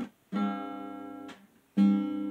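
Acoustic guitar strummed: one chord about a third of a second in rings for about a second and is cut off, then a second, louder chord is struck near the end and rings on.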